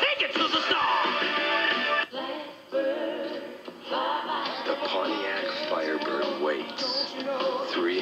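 Commercial music: a sung jingle ending, a short drop in level about two seconds in, then melodic music carrying on.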